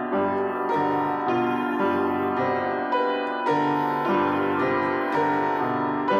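Piano music, chords and notes changing about twice a second at an even loudness.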